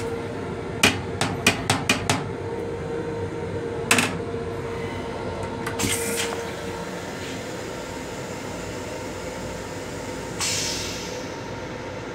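Steady rumble and hum of a Long Island Rail Road M7 railcar, heard inside its small restroom. A quick run of about six sharp knocks comes about a second in, another knock follows at four seconds, and a burst of hiss starts shortly before the end.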